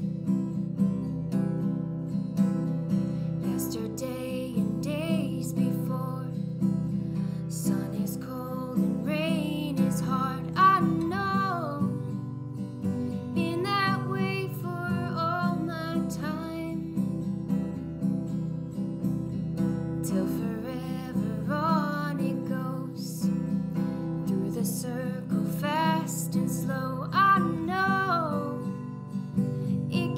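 Acoustic guitar strummed steadily in chords, with a wordless vocal melody rising and falling over it several times.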